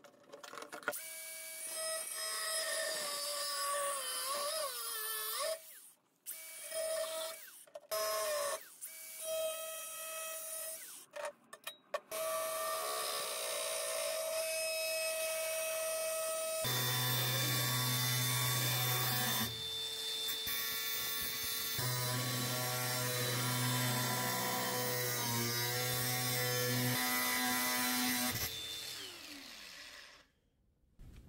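Cordless angle grinder cutting a rusty steel hand-saw blade. It runs as a steady whine in short bursts that stop abruptly, then runs longer from about halfway through, where the sound turns heavier and lower.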